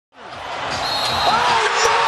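NBA game broadcast audio fading in from silence: basketball arena crowd and court sounds, getting steadily louder.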